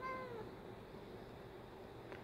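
House cat giving one short, soft meow right at the start, its pitch bending down at the end, as it stares up at a bug on the ceiling that it cannot reach.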